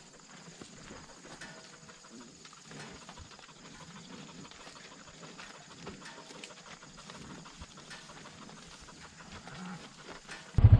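Herd of cattle walking across a gravel road, their hooves crunching and clicking faintly and irregularly on the gravel.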